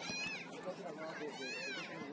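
Two high-pitched shouted calls, each rising and falling in pitch, one right at the start and one about a second and a half in, over a steady murmur of voices from players and spectators at a soccer match.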